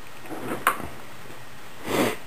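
The plastic door of a toy kitchen's microwave being pulled at, with a short sharp click about two-thirds of a second in and a louder clack near the end.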